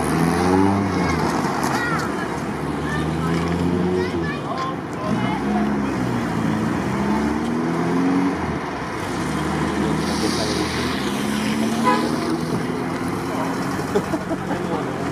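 Classic cars, a Ford Zodiac leading, driving past one after another, their engines rising in pitch several times as they pull away and accelerate.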